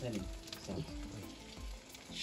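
Chopped greens sizzling as they fry in a black iron wok.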